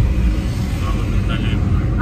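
Steady low rumble of a car's engine and tyres heard from inside the cabin while the car is being driven.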